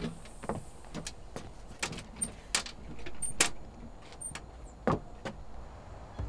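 A locked front storm door being tried: scattered sharp clicks and rattles of the door and its handle, with a denser rattle about three seconds in and one louder knock near the end.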